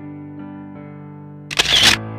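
Keyboard chords, an electric-piano sound, held with a few soft new notes. About one and a half seconds in, a loud half-second burst of noise cuts across them and stops as the chords carry on.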